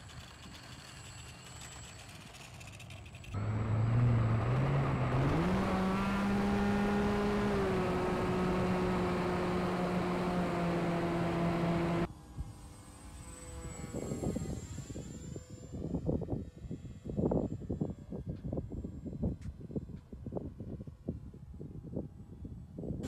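An RC plane's electric brushless motor (2212, 1400KV) and 8x6 propeller spin up, the pitch rising for a few seconds and then holding steady. About twelve seconds in this cuts off abruptly to gusty wind buffeting a camera microphone on board the plane in flight, with a faint motor whine under it.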